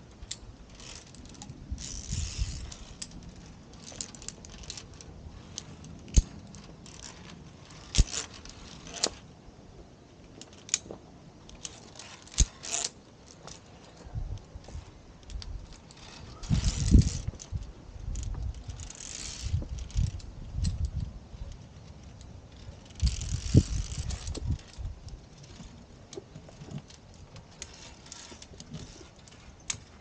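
Via ferrata lanyard carabiners clinking and scraping against the steel safety cable and rock as climbers move up, with scattered sharp metallic clicks. A few short bursts of rumbling noise come in past the middle.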